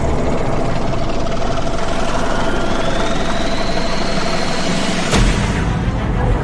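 Cinematic transition sound effect: a dense rumbling swell with a steady tone and a whine rising in pitch, ending in a sharp hit about five seconds in followed by a deep boom.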